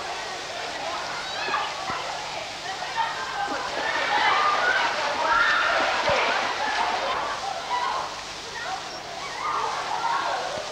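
Children's indistinct voices and shouts in an indoor swimming pool, over water sloshing and splashing as they swim.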